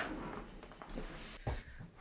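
Faint handling noise from a large cardboard jigsaw puzzle box being moved, soft rustling with a single light knock about one and a half seconds in.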